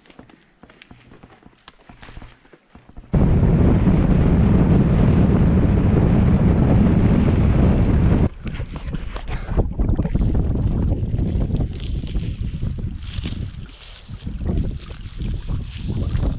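Wind buffeting the microphone: a loud, low rumble that starts suddenly about three seconds in and carries on in uneven gusts. Before it there are only faint clicks and rustles.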